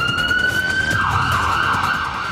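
A news-segment transition sound effect: one slowly rising siren-like tone that breaks into a wobbling warble about a second in.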